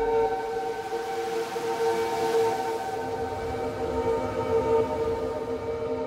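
A steady, siren-like sound of several held tones, with a swell of hiss peaking about two seconds in.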